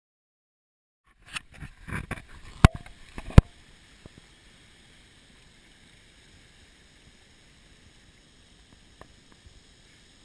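Rustling and knocks with two sharp clicks, consistent with a camera being handled, ending about three seconds in. Then a faint, even wash of a calm sea on a pebbly shore.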